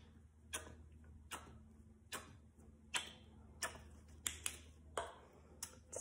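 Faint, sharp clicks about one a second, less even near the end: a small plastic squeeze bottle of dye clicking as it is squeezed drop by drop over shaving cream.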